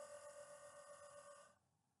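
Near silence: a faint steady hum fades away and cuts off suddenly about one and a half seconds in.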